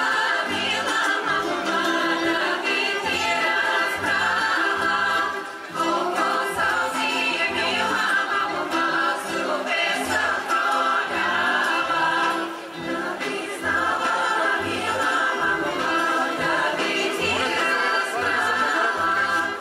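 Bulgarian folk women's choir singing in several voices, phrase after phrase with short breaks between, over a band whose bass plays a steady pulse of low notes.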